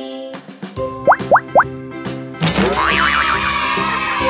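Cartoon sound effects over children's background music. About a second in come three quick rising whistle-like boings, the loudest sounds here, and from about halfway a wavering, warbling tone enters over the music.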